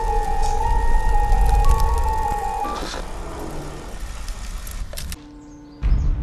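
Horror film trailer music: a slow stepping high melody over a deep bass rumble that swells during the first two seconds and then fades away. A quiet stretch with a low held tone follows, broken by a sudden deep hit just before the end.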